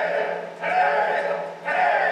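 A group of men chanting in unison, one loud shouted phrase about once a second in a steady rhythm, from the show's soundtrack.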